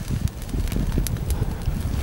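Wind buffeting the microphone: a fluctuating low rumble with a few faint clicks.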